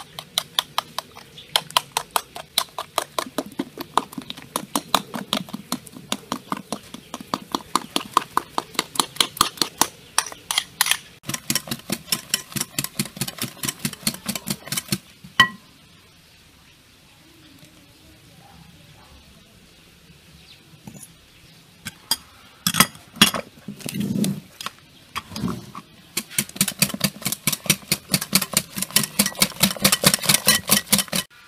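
Wire whisk beating an egg batter in a glass bowl, its wires clicking against the glass in a fast, even rhythm. The whisking stops for several seconds about halfway through. A few knocks follow, then the fast clicking starts again near the end.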